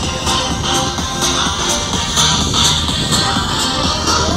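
Music with a steady beat, about two beats a second.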